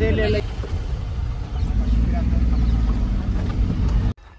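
Low, steady rumble of road and wind noise inside a moving car's cabin, with a faint hum in the middle. A voice is heard briefly at the start.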